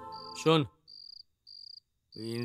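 Crickets chirping in short, evenly spaced high trills, about one every two-thirds of a second. A steady held music drone ends about half a second in, together with a short, loud voice falling in pitch, and then only the crickets remain.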